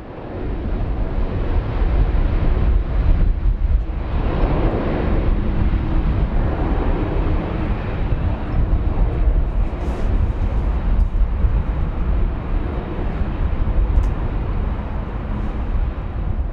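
Boeing 747-400's jet engines running at taxi power as the airliner rolls past, a steady deep rumble with a jet roar that swells about four seconds in.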